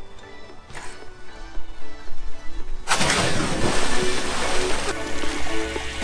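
A massive splash as a person jumping feet-first off a house roof hits a swimming pool about three seconds in, the water crashing and washing for a couple of seconds before it settles. Background music plays throughout.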